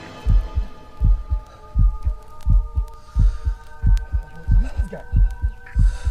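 Suspense sound effect: a low heartbeat-style double thump repeating about every three-quarters of a second under a steady held chord.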